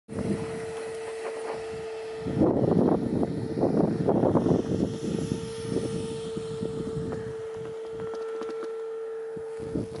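Wind buffeting the microphone in irregular gusts, strongest from about two to five seconds in, over a steady hum.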